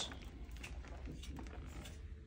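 Faint rattling and clicking of a shopping cart being pushed along a store aisle, over a low steady hum.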